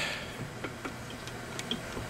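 A few faint, irregular light metal clicks from the orbiting scroll and its Oldham coupling of a disassembled Copeland scroll compressor being worked back and forth by hand.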